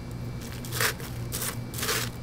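Crushed ice crunching in three short bursts as a plastic centrifuge tube is pushed down into an ice bucket, over a steady low hum.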